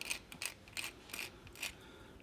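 A thin metal pick scratching and picking at flaking paint on a plaster wall, a string of short, irregular scratchy ticks.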